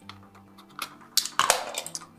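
A quick cluster of hard clicks and knocks in the second half as a wide-angle wet lens is handled and fitted onto an underwater camera housing's bayonet mount, over soft background music.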